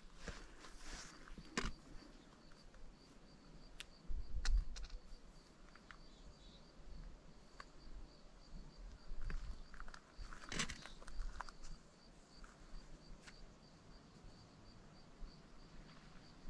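Quiet mountainside ambience with a faint, high chirp repeating steadily about two to three times a second, broken by a few small clicks and two short low bumps, one about four seconds in and one about ten seconds in.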